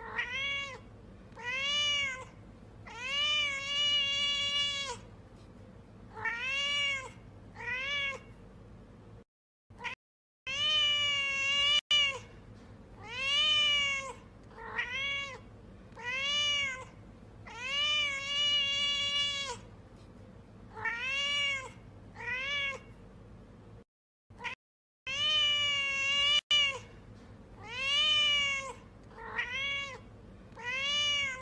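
Domestic cat meowing over and over, some meows short and some drawn out, each rising then falling in pitch, coming about one every second or two. Two brief breaks of dead silence fall about a third of the way in and again later.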